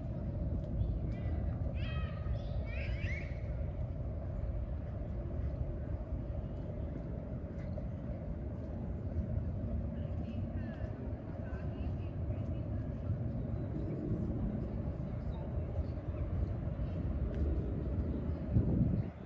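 Steady low outdoor background rumble with a constant hum, and a few quick high chirping calls about one to three seconds in, with fainter ones around ten seconds.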